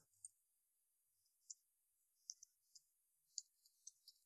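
Faint clicks of computer keyboard keys being typed: about seven short, irregular taps.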